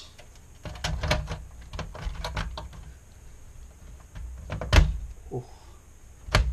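Handling of a sheet-metal LCD monitor chassis: a run of light knocks and clicks, then one loud knock about five seconds in.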